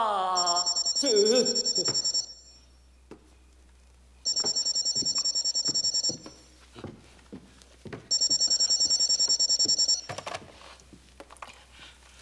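A corded desk telephone rings three times with a rapid electronic trill. Each ring lasts about two seconds, with about two seconds between rings. A man's wailing cry falls away at the very start, and soft knocks of movement come between the rings.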